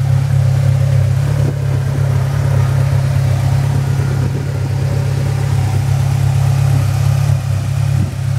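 Sand car's GM Ecotec four-cylinder engine idling steadily through its muffler and dual exhaust.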